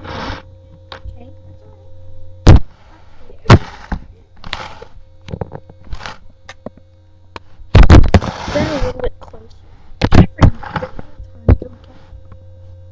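Indoor knee hockey play: a string of sharp knocks from mini hockey sticks striking the ball and the floor, loudest about two and a half seconds in and again near eight seconds, with scuffling and breathy vocal noises between them. A steady low electrical hum runs underneath.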